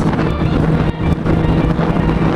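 Sport-bike engine holding a steady drone at highway cruising speed, with wind rushing over the microphone.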